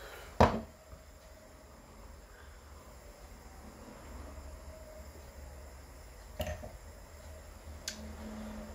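Quiet room tone while a man drinks from a glass of beer. A single sharp knock comes about half a second in, and a short, softer sound near the end, with no speech.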